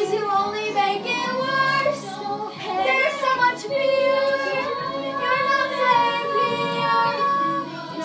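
Young girls singing a musical-theatre song, with sustained notes that move between pitches.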